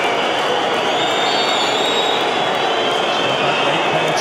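Football stadium crowd noise, a loud steady din from the stands, with shrill whistling held over it as the penalty is about to be taken.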